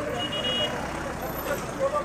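A white SUV driving slowly past at close range: an even rush of engine and tyre noise on the road.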